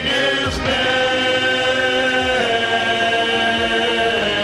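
Male vocal ensemble singing long held chords into microphones, the harmony shifting about half a second in and again past the middle.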